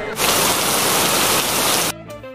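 Rain sound effect: a loud, steady hiss of heavy rain that starts just after the beginning and cuts off abruptly near the end.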